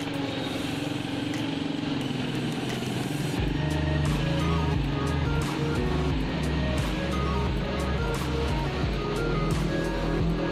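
Music with a strong bass line that comes in about three and a half seconds in, heard over street noise as a car drives past.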